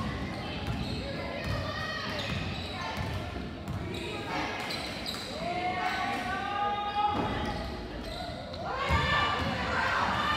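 A basketball bouncing on a hardwood gym floor as players dribble, with indistinct voices of players and spectators calling out in the echoing gym.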